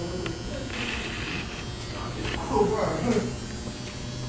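A steady low electrical buzz, with faint voices in the background about three seconds in.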